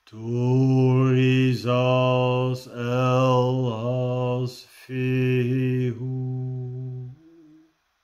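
A man chanting rune names in a low monotone, holding one pitch while the vowels change. He chants two long phrases with a brief breath between them near the middle, and the last fades out near the end.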